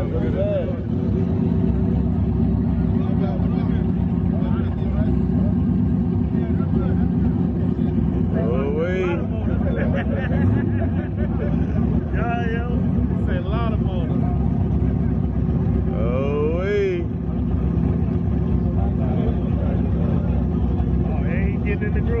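A car's engine idling steadily with a low rumble, with people's voices talking over it now and then.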